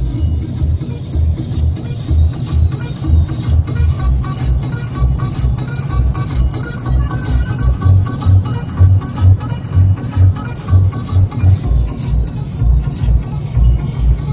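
Electronic dance music with a heavy bass beat about twice a second, playing loud on a car stereo, heard inside the moving car's cabin.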